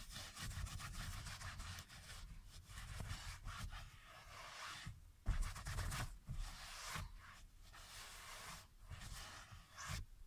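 Microfiber cloth wiping a fabric car seat cover, a soft rubbing in uneven strokes with short pauses, as foam upholstery cleaner is wiped up.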